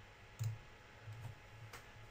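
A computer mouse click about half a second in, then a fainter click near the end.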